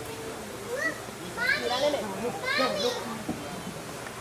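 Onlookers' voices with children calling out: two loud, high-pitched child shouts about a second and a half and two and a half seconds in, over a low murmur of talk.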